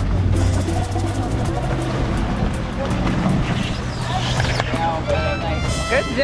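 A boat engine running steadily, with wind and water rushing. Voices come in over it in the last couple of seconds.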